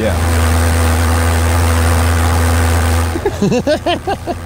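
Pulse jet engine running with a loud, steady low drone and hiss, cutting off suddenly about three seconds in.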